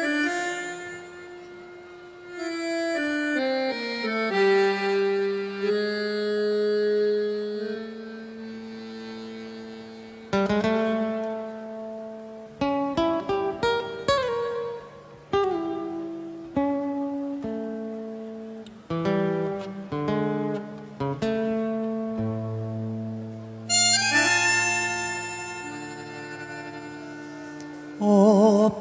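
Instrumental introduction on bandoneon and guitar: the bandoneon plays held chords and a slow melody, with plucked guitar notes coming in through the middle, and a brighter, louder bandoneon swell near the end.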